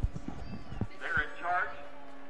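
A few soft knocks and clicks, then a short high-pitched voice about a second in.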